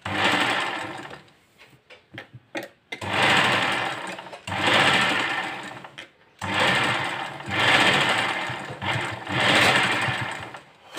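Sewing machine stitching fabric along a blouse neckline, running in bursts of one to three seconds with short stops between. About a second in there is a pause of roughly two seconds with a few light clicks before it runs on.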